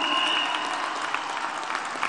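Audience applauding, the applause slowly dying away, with a thin high whistle at the start.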